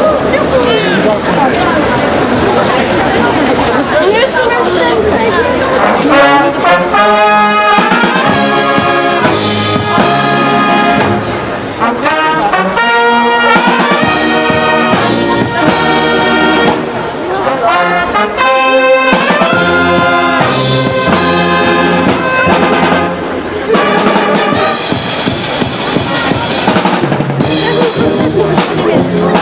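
Works brass band, with trumpets, trombones and tuba, playing a piece, with voices mixed in over the opening seconds. From about six seconds in, the band sounds out clearly in held chords.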